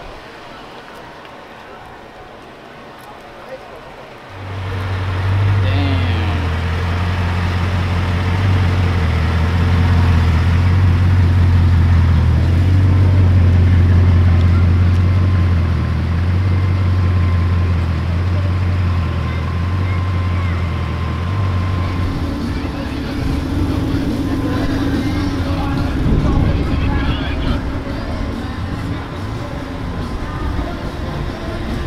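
Crowd chatter, then from about four seconds in a Bugatti Chiron's quad-turbocharged W16 engine idling with a steady deep drone. In the last third the drone gives way to a rougher, noisier engine sound.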